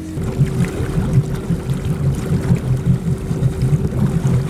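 Motorboat engine throttling up from idle about a quarter second in, its steady note stepping higher over an uneven low rumble, as the boat takes the load of pulling a rider up out of the water on a tow rope.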